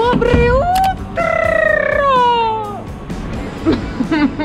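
A woman's voice singing out a high, drawn-out note. It slides upward at first, is held with a slight waver for about a second and a half, then falls away, over background music and street noise.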